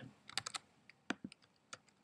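Faint computer keyboard keystrokes: a quick cluster of taps about half a second in, then single taps spaced out through the rest.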